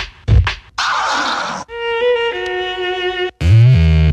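Samples from a DJ battle record, played one after another: a few short stabs, a burst of noisy sound, a held chord of steady tones lasting about a second and a half, then a loud deep tone near the end.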